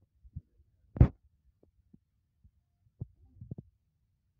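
A loud, sharp knock about a second in, with a few softer low thumps around it, the sound of things being handled or set down on a kitchen counter.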